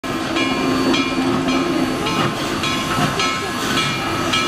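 Steam locomotive working slowly, its exhaust beating about twice a second with steam hissing between the beats.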